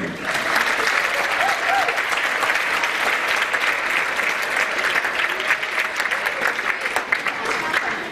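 Audience applauding, starting suddenly and carrying on steadily for several seconds.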